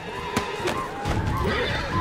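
Film soundtrack of a horseback charge: a horse whinnying over hoofbeats and scattered knocks, with a low rumble that swells about a second in.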